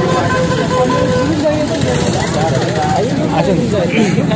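Men's voices talking over street traffic noise, with a vehicle horn held on one steady note that stops a little over a second in.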